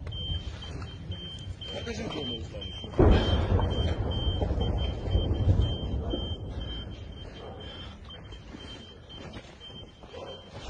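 A high electronic beep pulsing rapidly, several times a second, over a low rumble. About three seconds in, a sudden loud low rumble starts and fades over the next few seconds.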